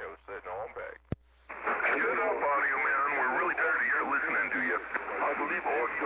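A man's voice coming in over a two-way radio receiver, thin and band-limited, talking without a break from about a second and a half in. Just before it, after a moment of speech, a single sharp click as the transmission changes over.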